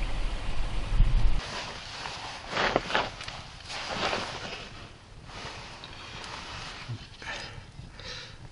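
A low rumble for about a second and a half, then a small wood campfire burning, with a soft hiss and a few brief rustles and crackles.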